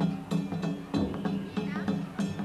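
Danjiri-bayashi festival music from a danjiri float: drums and hand gongs struck in a quick, steady beat of about three strikes a second, the gong strokes ringing.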